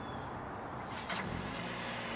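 Low rumble of a car engine running, growing a little louder after about a second, with one short sharp sound about a second in.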